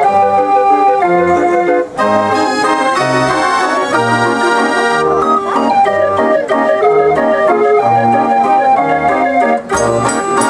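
Jubileumorgel mechanical street organ (katarynka) playing a tune on its wooden pipes. The melody and chords run over a pulsing bass that sounds about twice a second.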